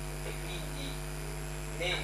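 Steady, low electrical mains hum from the microphone and sound system. A man's voice starts again near the end.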